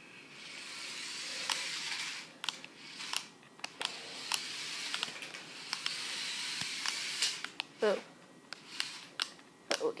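A small remote-control toy stunt car's electric drive motors whir high in two long spurts as it runs on a concrete floor. Sharp clicks and knocks are scattered throughout.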